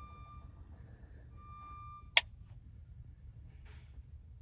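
A single sharp click about two seconds in, just after a faint brief tone, from a tap on the Precision Planting 20/20 monitor's touchscreen, over a low steady hum.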